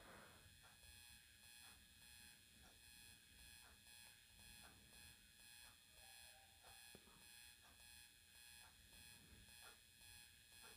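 Near silence: faint steady background hiss, with faint ticks about once a second.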